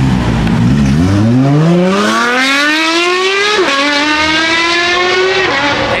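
Straight-piped Porsche 911 GT3 RS flat-six launching hard and accelerating away. The revs climb steeply, fall at an upshift about three and a half seconds in, climb again, and fall at a second upshift near the end.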